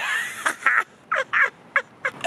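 A woman laughing: a breathy start, then about five short, high cackling bursts in quick succession.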